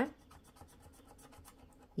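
Faint scratching of a scratch-off lottery ticket, its coating scraped away with a hand-held scraper tool.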